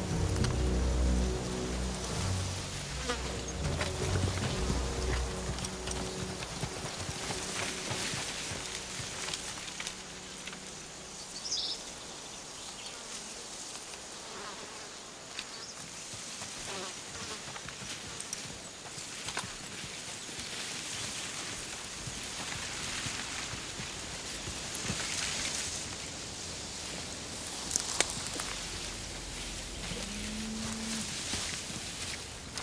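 Field ambience from a film soundtrack: insects in the grass with soft rustling of brush, under a quiet music score that fades out within the first few seconds.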